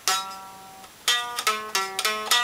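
Electric guitar played clean: one picked note rings and fades over the first second, then a quick run of about four notes follows, fretted reaches on the fourth and fifth strings over a held note.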